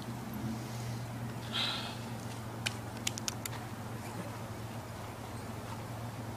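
Quiet outdoor background with a steady low hum, a brief soft hiss, and a few faint clicks near the middle.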